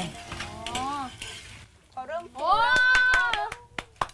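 A child's high, drawn-out wordless exclamation that rises and then holds, after a shorter gliding vocal sound. A faint hiss stops about one and a half seconds in, and a few sharp clicks come near the end.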